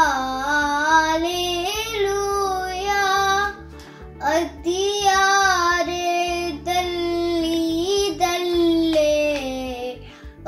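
A young girl singing a hymn from the Holy Qurbana solo, one voice alone, in long held notes that glide from pitch to pitch, with a short breath about four seconds in.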